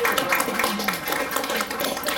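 A small group applauding by hand: a dense patter of claps.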